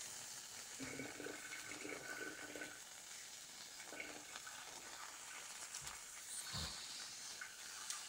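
Field mushrooms cooking on aluminium foil on a hot hob, a faint, steady sizzling hiss. A short soft knock about two-thirds through.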